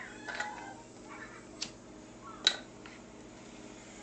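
A few short, sharp clicks, the loudest about two and a half seconds in, as a butane torch and a length of coat-hanger wire are handled, over a faint steady hum.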